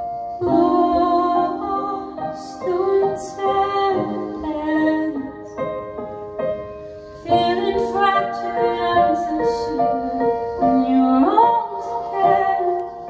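A woman singing a slow melody into a microphone over electronic keyboard accompaniment, played live. Her phrases begin about half a second in and again about seven seconds in, with a quieter passage between.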